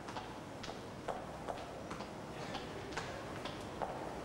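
Footsteps climbing steps: sharp, evenly spaced clicks of shoes, about two a second.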